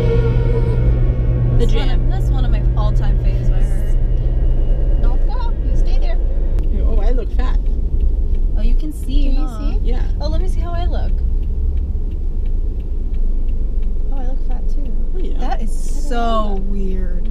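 Music playing in a moving car's cabin over a steady low road rumble, the song trailing off in the first few seconds. Then voices talk over the road noise.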